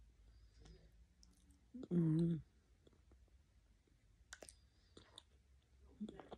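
A woman eating, with soft wet mouth clicks and smacks as she chews, and one short hummed "mm" about two seconds in, the loudest sound.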